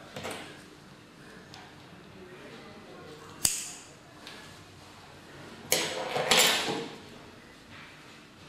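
Fiber optic stripping tool working on a cable: a sharp click about three and a half seconds in, then a longer scraping rush around six seconds as the jacket and coating are pulled off, with tools handled on the table.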